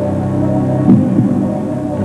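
Quiz-show suspense music bed playing under a question: a low, steady drone with a single louder beat about a second in.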